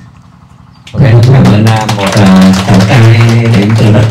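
Voices singing together, starting loudly about a second in after a brief lull, in held, sliding notes.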